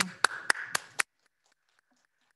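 A few hands clapping briefly, four quick even claps about four a second, in applause after a unanimous vote; the sound then cuts off suddenly.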